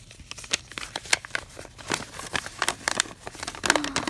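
Folded sheets of writing paper being unfolded and handled by hand: a quick, irregular run of crinkles and rustles.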